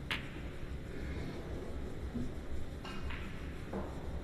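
Snooker balls clicking: a sharp click as the cue ball strikes a red right at the start, then fainter short knocks around three seconds in over low hall ambience.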